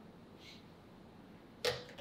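Quiet room tone in a small studio room, then near the end a sudden short burst of noise.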